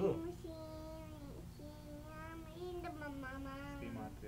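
A high-pitched voice chanting in long, drawn-out sung notes, with a short break about a second and a half in and a slight waver before the last held note.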